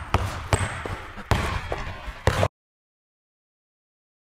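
A basketball dribbled on a hardwood gym floor: about four bounces in the first two and a half seconds, each one echoing. Then the sound cuts off dead.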